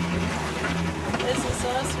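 Catalina 22 sailboat under way, with a steady low drone and the rush of wind and water. A short spoken remark comes near the end.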